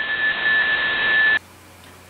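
Receiver hiss from a software-defined radio on 28.500 MHz upper sideband, the open band after the test transmission has ended, with a steady high whistle running through it. It cuts off abruptly about one and a half seconds in, leaving faint room tone.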